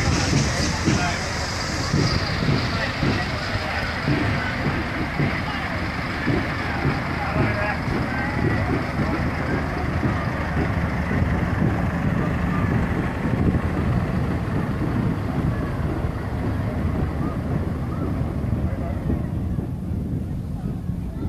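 Diesel engines of a float lorry and a fire engine running as they pass slowly close by, a steady low rumble, with spectators chatting. A high hiss dies away about two seconds in.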